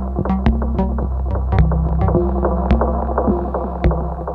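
Eurorack modular synthesizer playing a generative patch: a low, steady droning bass with short plucked notes and clicks falling at uneven intervals over it.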